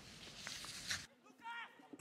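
Faint room tone, with a brief faint pitched sound about one and a half seconds in.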